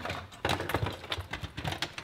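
Hard plastic computer gear and cables clattering, with irregular clicks and knocks as a hand rummages through a pile of them.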